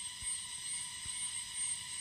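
Pause in speech: faint steady background hiss with thin high hum lines, and a couple of soft ticks.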